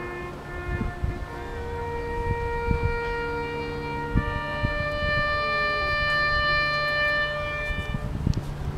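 Slow ceremonial music on wind instruments, long held notes sounding at several pitches at once, rising to a sustained chord over the last few seconds. A low rumble of wind or handling noise runs beneath it.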